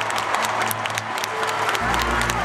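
A large arena crowd applauding, many hand-claps, with music playing under it; a deep bass note comes in near the end.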